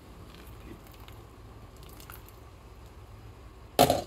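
Faint steady bubbling of red beans simmering in a pot of water, then a single sharp clatter near the end from the pot's glass lid.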